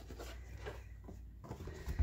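Hands handling and separating wet, coffee-soaked paper sheets in a plastic tub: faint rubbing with a few small clicks.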